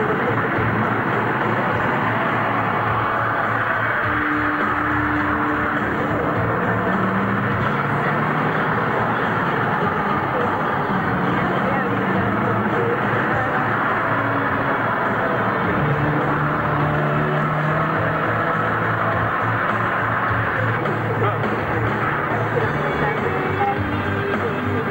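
Low-fidelity film soundtrack: music with a few long held notes over a dense, steady rushing noise.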